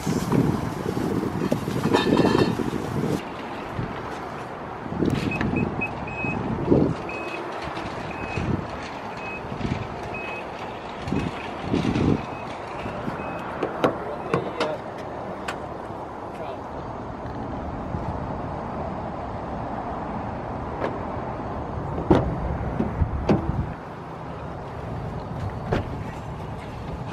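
Plastic shopping bags rustling and items knocking as groceries are loaded into a car's boot, with a few sharp thumps. For several seconds in the middle a short, high electronic beep repeats a few times a second.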